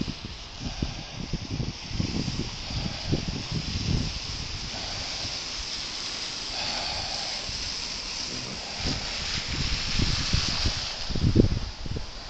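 Car tyres hissing on a wet, slushy road, the hiss swelling in the middle as traffic passes. Wind buffets the microphone with irregular low rumbles, the strongest gust just before the end.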